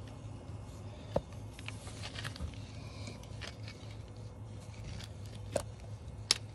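Twin fuel pumps of a 1989 Mercedes 560SEC humming steadily, run with the fuel pump relay jumped, with a few light clicks and scrapes of a phone being handled close to the microphone.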